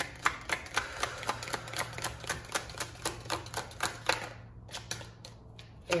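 A deck of cards being shuffled by hand: a quick, even run of soft card clicks, about four or five a second, thinning out to a few near the end.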